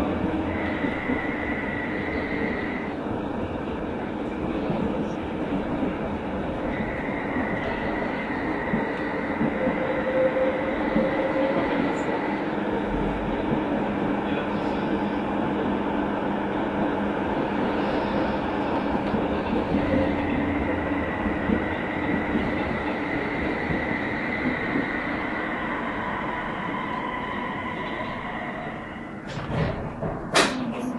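Tram running along street track, heard from inside the cab: a steady rumble of wheels on rail with a high whine that comes and goes, easing off near the end as the tram slows.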